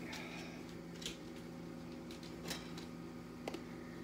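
Three light clicks and taps from kitchen items being handled, spaced about a second apart, over a steady low hum.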